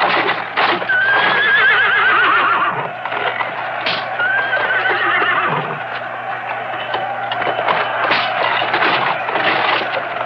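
Chariot horses neighing as they strain against chains, with hooves clattering and stamping. There are two long, wavering neighs, about a second in and about four seconds in.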